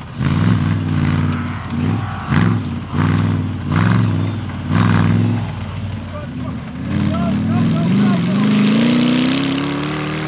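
3.5-litre Rover V8 of an 80-inch Series Land Rover comp safari racer, revved in repeated surges about once a second as it is driven hard over rough grass. About seven seconds in it holds the throttle, its pitch rising steadily as it accelerates away.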